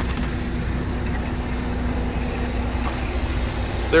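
A steady low rumble with a faint steady hum, like a vehicle engine running nearby.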